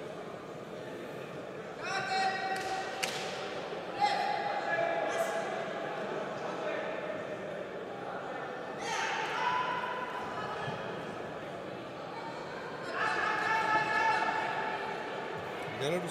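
Raised, high-pitched voices call out in four stretches, echoing in a large hall, over a steady murmur. There is a sharp knock about four seconds in.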